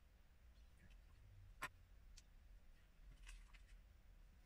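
Faint clicks of plastic Lego bricks being handled and pressed together over near-silent room tone, with one sharper click about a second and a half in.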